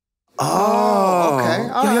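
A man's voice, starting about half a second in, holds one long drawn-out call for about a second, then breaks into a quick "yo, yo".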